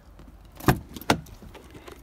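Two sharp clunks about half a second apart from a Volvo XC90's rear passenger door handle and latch as the door is pulled open.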